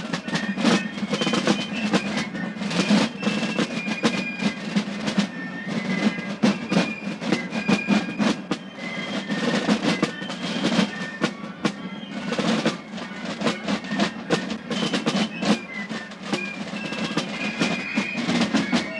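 Basel carnival fife-and-drum band playing: fast, dense snare drumming under short, high fife notes.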